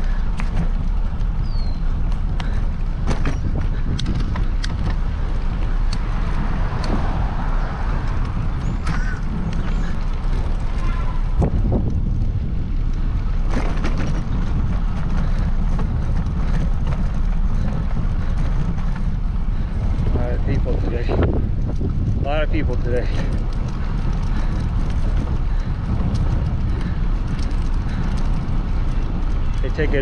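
Steady wind rumble on the microphone of a camera on a moving bicycle, with traffic going by on the road alongside.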